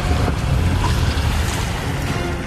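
Animated sound effect of a massive stone cave door sliding shut: a loud, deep rumbling grind of rock, with background music underneath.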